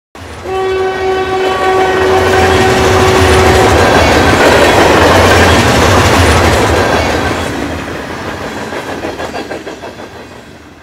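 Steam locomotive whistle held for about three seconds over the rumble and clatter of the train, which swells as it passes and then fades away.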